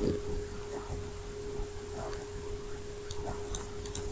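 Quiet background of a recording: a steady faint tone with a low electrical hum beneath it, and a few faint clicks a little after three seconds in.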